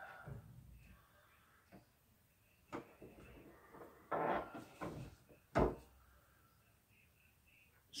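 Heat press being adjusted and clamped shut: scattered knocks and clunks of metal parts, the loudest a sharp thud about five and a half seconds in as the upper platen comes down.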